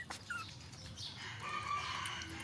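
A rooster crowing: one drawn-out call in the second half, after a short chirp near the start.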